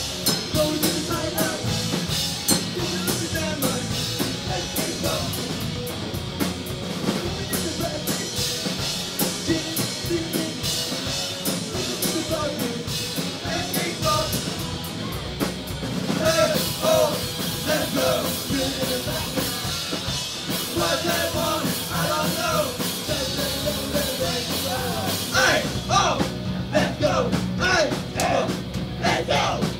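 Punk-rock band playing live: electric guitar, bass guitar and drum kit with steady cymbal strokes, with sung vocals that come through more strongly in the second half. Hard cymbal hits stand out near the end.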